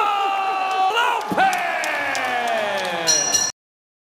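A ring announcer's drawn-out call of the winner's name over a cheering arena crowd: one held note, then a longer note that slowly falls in pitch. The sound cuts off suddenly about three and a half seconds in.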